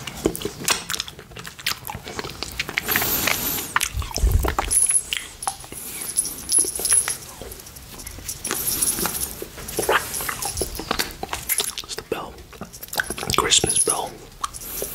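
Close-miked wet mouth sounds of licking and sucking a rainbow candy cane: a steady run of smacks, slurps and clicks, with a low thump about four seconds in.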